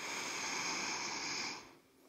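A woman's long audible in-breath, lasting about a second and a half, then fading out.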